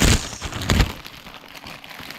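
Plastic poly mailer bag torn open by hand: two loud sharp rips, one at the start and one just under a second in, then softer crinkling of the plastic.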